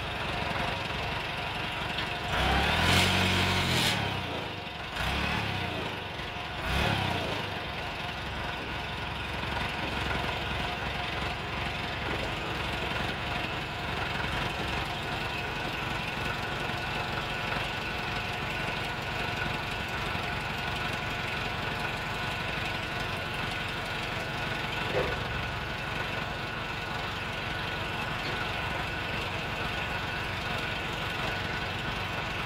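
Diesel engine of an old backhoe loader running, revved up hard about two to four seconds in and briefly twice more around five and seven seconds, then settling to a steady idle.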